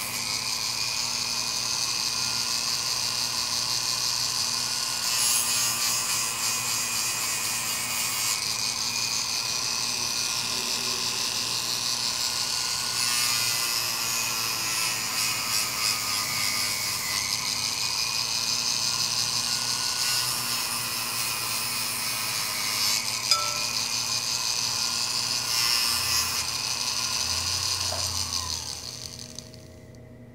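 Rotary tool spinning a diamond grit sanding disc, wet-grinding the glass enamel off the edge of a cloisonné pendant: a steady grinding whine and hiss whose pitch drifts slightly as the speed changes. It stops about a second before the end.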